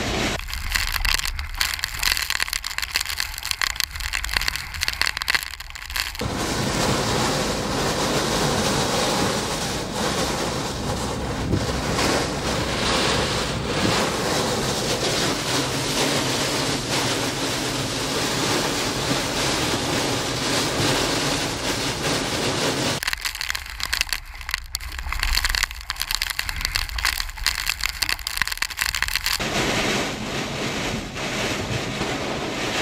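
Severe thunderstorm wind and driving rain lashing a car, heard from inside: a dense, steady rush of wind and rain on the body and windshield. Clusters of sharp rattling hits come in the first few seconds and again near the end.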